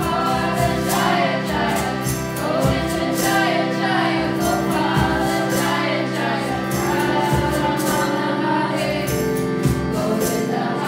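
Group kirtan chanting: many voices singing together over a steady sustained drone, with accompanying guitar and regular hand-drum strikes.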